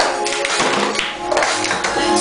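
Music playing, with a steady run of rhythmic taps and thuds of cups being clapped and struck on a table in the cup game.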